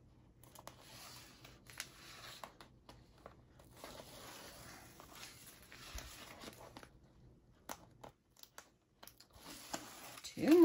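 Faint rustling and peeling as backing strips are pulled off adhesive tape and a sheet of paper is lifted and handled, with a few small clicks.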